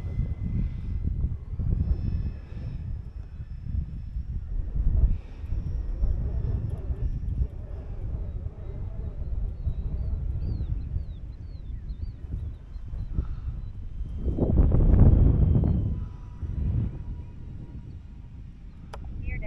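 Wind buffeting the microphone in gusts, with the twin electric motors and propellers of an E-flite Beechcraft D18 model plane running faintly as it makes a pass. The sound swells to its loudest about fifteen seconds in.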